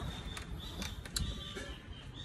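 A few light clicks and clinks as a kitchen knife and small iba fruits are handled over a stainless steel bowl. Birds call in the background with thin whistled notes.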